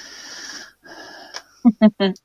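A person laughing: two long, wheezy breaths, then three short, sharp voiced laughs near the end.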